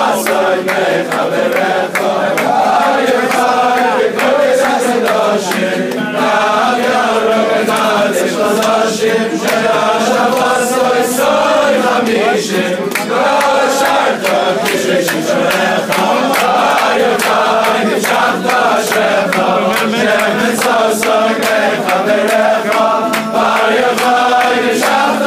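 A crowd of men singing a Hebrew song together, loud and continuous, with hand claps keeping the beat.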